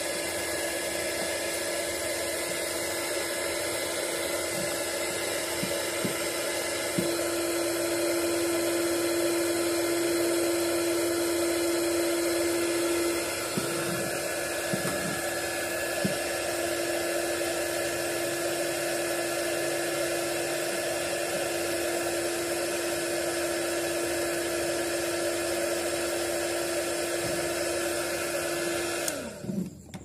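Small handheld 300 W heat gun running steadily, its fan and motor giving a constant hum with a steady whine, blowing hot air onto an SD card. About a second before the end it is switched off and the motor winds down with a falling pitch, followed by a few light clicks.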